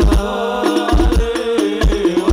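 Hadrah percussion ensemble playing: deep bass-drum strokes with quick darbuka and frame-drum hand strikes, over a held melody line.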